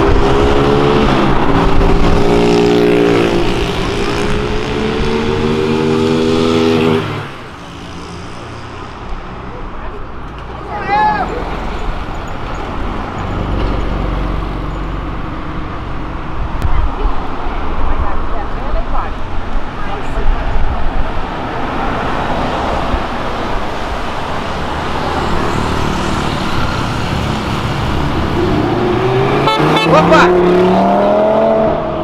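Cars accelerating past, engines revving: one engine climbs in pitch for the first seven seconds and stops abruptly, then traffic noise follows, and another engine rises in pitch near the end.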